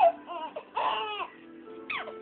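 A baby squealing with laughter: a few short, high-pitched squeals in the first second and a half, the longest near the middle.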